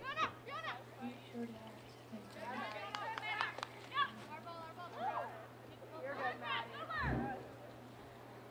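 Women's voices shouting and calling across a soccer field: several short, high-pitched calls that overlap, thickest in the second half, with a dull thump about seven seconds in. A steady low electrical hum runs underneath.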